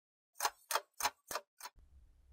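Five sharp, evenly spaced ticks, about three a second, the last one fainter, like a clock-tick sound effect, followed by a faint low hum.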